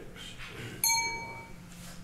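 A single bright clink about a second in, from a small hard object being struck, ringing on with a few clear high tones and dying away within a second.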